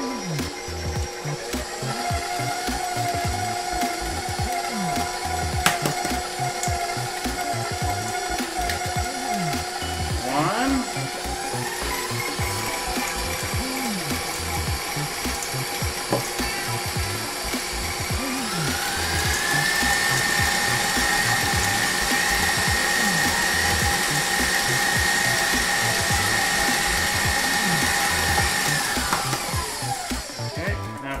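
Stand mixer motor running, beating thick choux dough for churros as eggs are worked in. Its whine steps up in pitch twice as the speed is raised, about a third and about two-thirds of the way through, then winds down at the very end.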